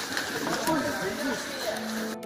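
A group of people pushing through forest undergrowth: brush rustles under their steps while their voices talk indistinctly.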